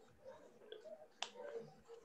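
Near silence of a video call, with one faint, sharp click a little over a second in.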